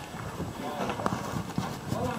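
Irregular hollow knocks and thumps on the wooden roof framing, a handful of separate strikes with uneven spacing, with people talking faintly in the background.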